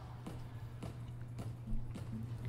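Steady low electrical hum with a few faint, soft clicks spread through it.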